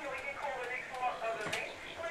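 Indistinct voices talking in the background, too faint to make out, with one sharp click about one and a half seconds in.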